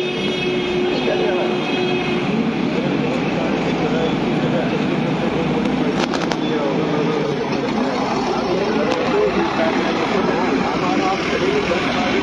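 Many voices talking over one another, with steady vehicle and engine noise underneath. A few short sharp clicks come about six seconds in.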